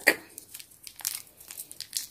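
A small clear plastic bag crinkling in the fingers, with irregular little crackles as it is picked at to tear it open.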